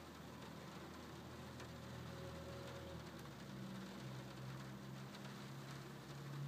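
Light rain on a glass skylight: a faint, steady hiss with scattered ticks of single drops, over a low hum.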